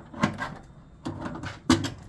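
Metal rotisserie spit clicking and knocking against the inside of a Kalorik air fryer oven as it is fitted into its side sockets: a few sharp knocks, the loudest a little before the end.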